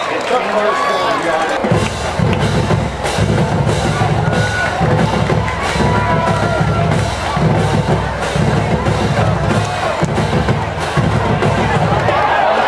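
Drums with a heavy bass drum beating a steady rhythm, starting about two seconds in, over crowd cheering and chatter.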